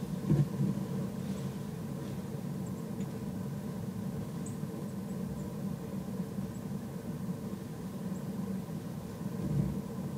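A steady low mechanical rumble, like a distant engine, runs throughout with a faint even hum. A couple of short low knocks come just after the start.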